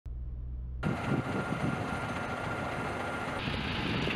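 Heavy trucks running, a steady noisy rumble that starts about a second in after a low hum.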